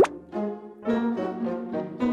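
Comic music cue added in the edit: a sharp pop, then a run of about four held, evenly pitched notes, each about half a second long.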